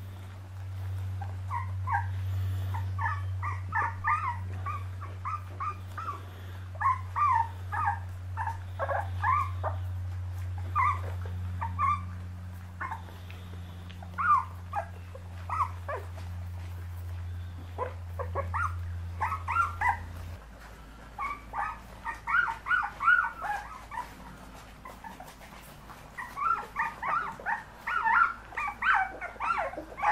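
Puppies yipping and whimpering at their food bowls, many short high cries in quick runs throughout. A steady low hum runs underneath and stops about two-thirds of the way through.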